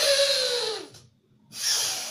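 Forceful, noisy nasal breaths through one nostril in alternate-nostril breathing (anulom vilom): two rushes of air about a second long with a short gap between them, the first with a falling whistle. This audible, strained breathing is the mistake being demonstrated; the breath should be smooth and silent.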